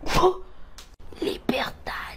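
A voice making a few short, breathy, whispered sounds and exclamations with no clear words, the first a brief pitched exclamation just after the start.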